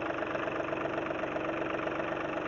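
An engine running steadily, with a constant hum and a fast, even low throb.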